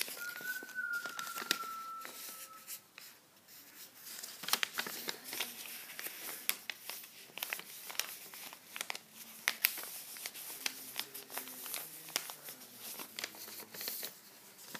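A sheet of paper being folded and creased by hand: a run of crinkling rustles and short sharp crackles.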